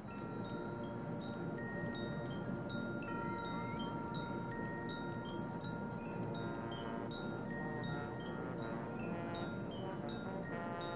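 Marching band front-ensemble percussion playing chime-like metallic notes: many short high bell tones scattered over a few held ringing tones, growing busier in the second half.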